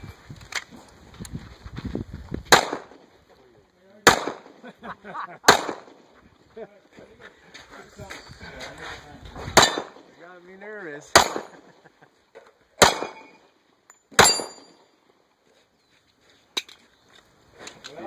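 Seven shots from a semi-automatic pistol: three about a second and a half apart, a pause of about four seconds, then four more at the same pace. Steel targets ring briefly after some of the hits.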